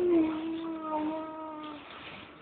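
A young child's long, drawn-out fussy whine, one held note sliding slightly down in pitch and fading out near the end.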